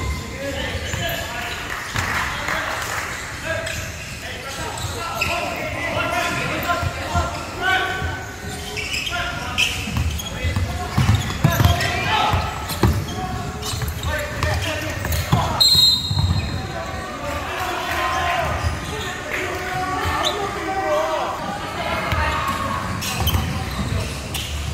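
Basketball game in a large sports hall: a basketball bouncing on the hardwood court, with players' and onlookers' voices calling out over the play. A short shrill tone sounds about sixteen seconds in.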